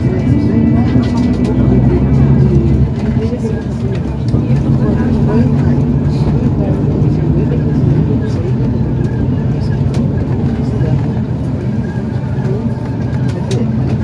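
City bus engine running and road noise heard from inside the passenger cabin, the engine note shifting a couple of times as the bus changes speed, with passengers talking in the background.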